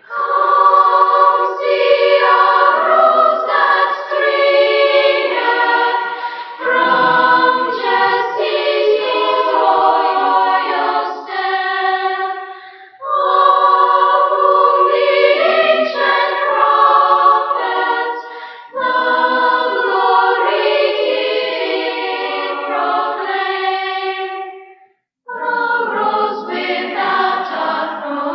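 Children's choir singing in long phrases, with short breaths about halfway through and a brief stop near the end before the next phrase. The sound is dull in the top end, a transfer from a 1984 cassette tape.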